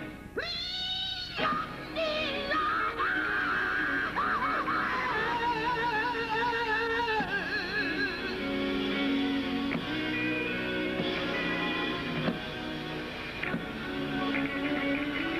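Live gospel quartet music with band backing: a lead voice holds a high, wavering note near the start and sings on with heavy vibrato, over electric guitar, drums and sustained chords that carry through the second half.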